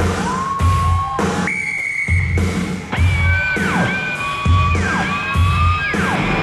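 Live rock band playing: a heavy low beat about once a second under long high sustained tones that hold, then slide down in pitch.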